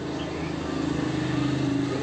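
A steady engine hum from a motor vehicle, growing slightly louder toward the middle.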